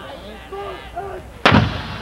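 Marching band's opening hit about one and a half seconds in: a sudden, loud full-ensemble attack of percussion and brass, after which the brass chord is held. Before it, voices are heard.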